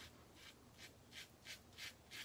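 Faint, quick scraping strokes of a Karve Christopher Bradley stainless steel safety razor cutting lathered stubble on the cheek, about three strokes a second.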